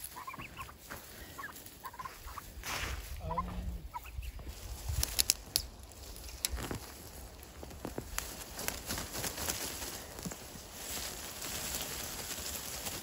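Domestic turkeys give a few short, soft calls. Then come rustling and sharp crackles as frost-killed pepper plants are pulled up by their roots out of a raised garden bed.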